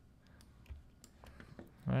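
A few faint, isolated clicks of a computer mouse, with the start of a man's word near the end.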